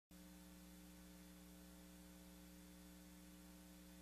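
Near silence: a faint, steady electrical mains hum in the audio feed.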